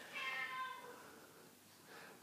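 A domestic cat gives one short, quiet meow lasting under a second.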